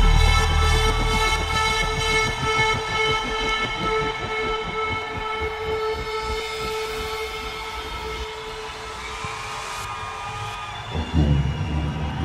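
A long, steady chord of several held tones over a low rumble that fades away in the first seconds; a deep bass beat comes back in near the end.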